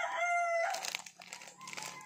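A rooster crowing, the call ending well under a second in, followed by the crackly rustle of a small plastic wrapper being handled.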